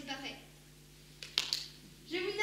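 A child actor's spoken line on stage trails off, followed by a pause in the dialogue with one short, sharp noise a little past the middle.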